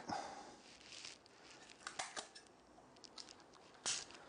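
Faint sounds of sticky tape being pulled from a desk tape dispenser and torn off: a few soft clicks and rustles, with a brief louder burst near the end.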